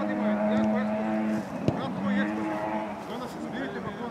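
A football kicked once, a sharp thud about halfway through, over a steady drone that breaks off briefly and comes back, with players' voices in the background.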